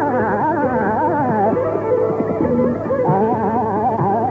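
Hindustani classical vocal tarana in raag Tilak Kamod: rapid, wavering melodic runs over a steady drone, breaking into choppier, shorter phrases in the middle before the fast runs return near the end.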